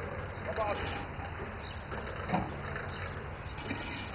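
Steady low outdoor rumble with a short snatch of a person's voice about half a second in and a brief louder sound a little after two seconds.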